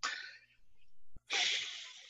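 A person's breath blown out hard in two sharp, pitchless bursts, one at the start and a stronger one just past halfway, each fading quickly, with a softer breath between them.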